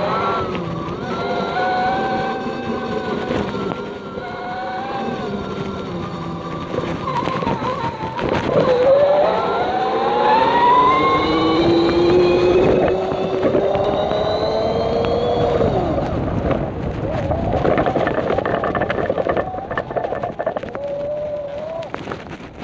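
Homemade electric bike's brushless motor, driven by a Hobbywing Platinum 200A speed controller, whining as the bike is ridden. The whine wavers at first, then several pitches climb together for about seven seconds as the bike speeds up, and fall away as it slows.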